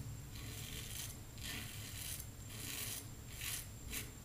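Double-edge safety razor (Fatip Testina Gentile with a Voskhod blade) scraping through beard stubble in a series of short strokes, a faint rasp with each pass.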